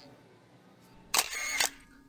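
Camera shutter sound about a second in: a sharp click and a second click about half a second later.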